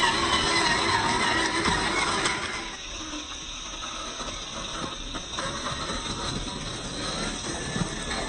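A 1/10-scale RC rock crawler's brushed electric motor and geared drivetrain whirring as it crawls over loose rock, with tyres crunching on gravel. Louder for the first two and a half seconds, then quieter.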